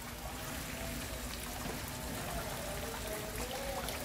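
Steady trickling and pouring of rainwater, with rain falling on a pond: an even hiss.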